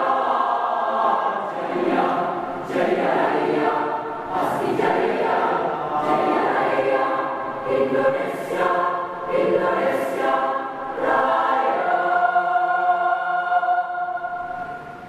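Mixed choir of men and women singing in full harmony, with a few sharp hissing accents. It settles into a long held chord near the end.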